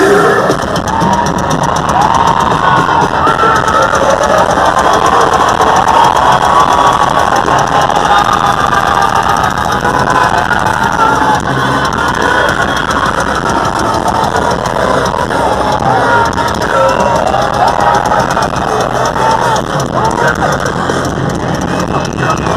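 Large concert crowd cheering and screaming, breaking out suddenly at the start and staying loud, with music from the PA underneath.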